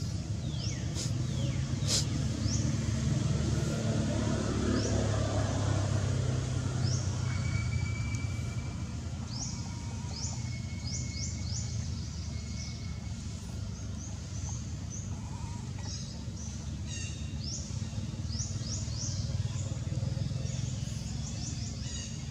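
Birds chirping: many short, high, rising chirps in quick runs, over a steady low rumble.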